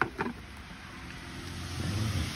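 Two quick knocks as a wooden-handled hand cultivator is set down among other things in a plastic bucket, followed by a low, steady rumble.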